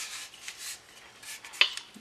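Handling noise of an AR-15 lower receiver and its fixed stock being gripped and twisted by hand to check for play: soft rubbing and scraping, with one sharp click about one and a half seconds in.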